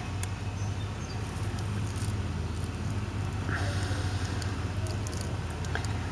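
A hooked pick tool clicking and scraping faintly against metal as it works the crankshaft position sensor's O-ring out of the iron engine block, over a steady low background hum.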